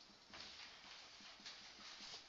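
Faint scratching and light taps of a marker writing letters on a whiteboard.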